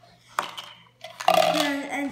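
A single sharp plastic click as plastic jars holding bottle caps are handled on a table, a little under half a second in, followed about a second later by a boy's voice.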